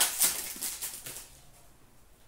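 A stack of trading cards being shuffled through in the hands: quick papery slides and light clicks of card stock over the first second or so, dying away after that.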